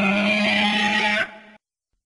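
One long vocal 'uhh' call at a steady low pitch, stopping abruptly about a second and a quarter in, with a short fainter tail.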